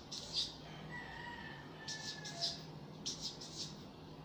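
Felt-tip marker squeaking and scratching across paper in short strokes as digits are written, in clusters, the loudest about half a second in. A faint rooster crow sounds from about a second in, over a steady low hum.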